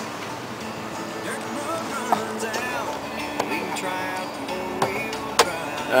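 Music playing on the pickup's cab radio, with a voice in it.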